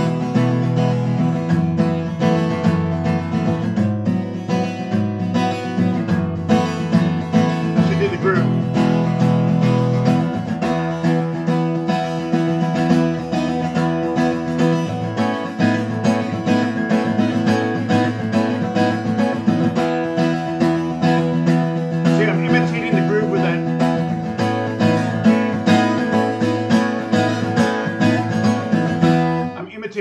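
Acoustic guitar strummed in a steady rhythmic groove in E major, its chords ringing with open B and high E strings. The strumming stops about half a second before the end.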